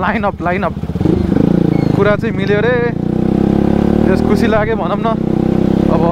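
Motorcycle engine heard from the rider's seat, pulling away from about a second in with its pitch rising steadily as it accelerates, with a man's voice talking over it.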